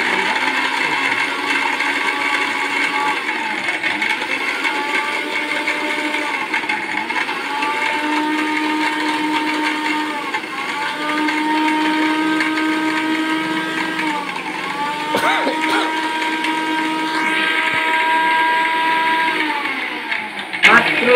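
Philips 750-watt mixer grinder running at speed with a stainless-steel jar, grinding coconut into powder. Its pitch dips briefly and recovers four times, with a couple of knocks about three-quarters of the way in, and the motor stops at the end.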